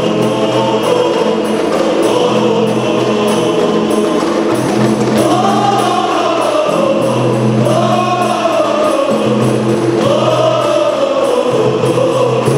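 A men's rebana group singing an Islamic qasidah song together, with held, gliding melody lines, over a regular beat of rebana frame drums.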